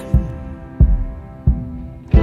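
Instrumental gap between sung lines of a slow pop ballad: three low drum thumps about two-thirds of a second apart under a held chord.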